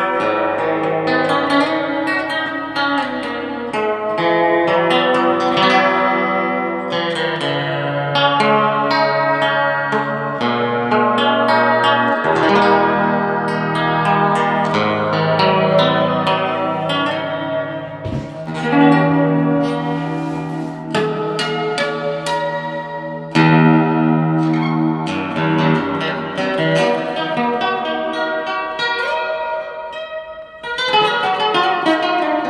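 Harley Benton Custom Line Nashville nylon-string electro-classical guitar, fingerpicked, its piezo pickup heard through a Yamaha THR10 amplifier with delay and reverb, so the notes ring on and echo over held bass notes.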